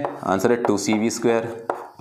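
Chalk tapping and scraping on a blackboard as an equation is written, under a man's voice talking throughout.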